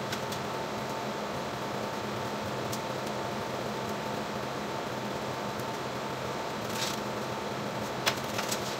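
Steady hum and whoosh of a ventilation fan with a faint steady whine, at an even level throughout. There are a few faint ticks and a brief rustle about seven seconds in.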